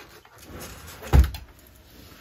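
A thick stack of paper workbooks set down on a desk, landing with one dull thud about a second in, with faint handling rustle around it.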